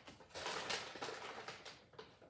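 Cat chewing a crunchy treat: a faint crackling with many small ticks, for about a second and a half.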